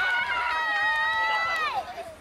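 A person's long held shout on one steady, high pitch, lasting about a second and a half and dropping off at the end, over crowd noise.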